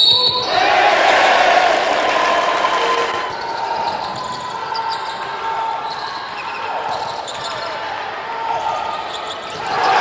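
Live basketball game sound in an arena: a basketball bouncing on the hardwood court against the crowd's noise. The crowd swells early on, settles, and swells again near the end.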